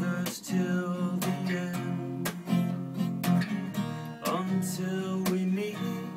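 Steel-string acoustic guitar strummed in a steady rhythm, chords ringing between the strokes, in an instrumental passage of a slow ballad.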